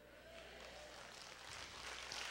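Near silence: faint room tone, an even hiss that swells a little toward the end, over a steady low hum.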